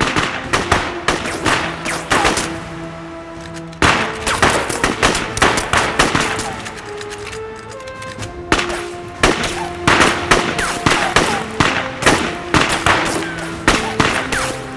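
Several bolt-action rifles firing in a ragged, rapid volley, shot after shot with no set rhythm, easing off twice briefly before picking up again. Background music with long held notes plays underneath.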